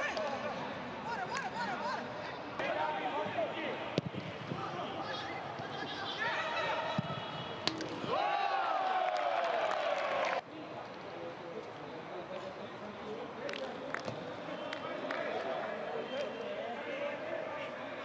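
Live pitch sound of a football match with no crowd: players' shouts and calls, with a few sharp kicks of the ball. A long drawn-out shout starts about eight seconds in, falls in pitch and cuts off suddenly.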